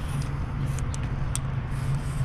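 A Sharpie oil-based paint marker squeaks and scratches in short strokes as its tip drags across a smooth white panel, with a steady low hum underneath.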